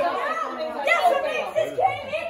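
Several voices talking and exclaiming over one another.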